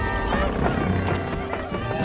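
Film soundtrack: loud dramatic music with children's voices crying out over it.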